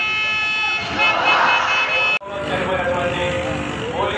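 A long steady horn note, one pitch held without change, over a haze of crowd voices. It stops dead at an abrupt cut about two seconds in, and voices carry on after it.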